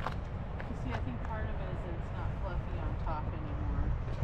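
Indistinct talking of people close by, too unclear to make out words, over a steady low rumble.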